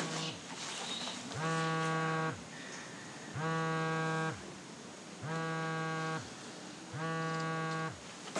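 Mobile phone vibrating with an incoming call: four buzzes about a second long, roughly two seconds apart.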